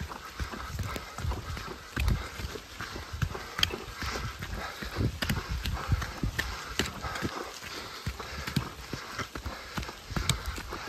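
Hurried footsteps on a dirt forest trail, low thumps about two a second, with sharp clicks scattered among them.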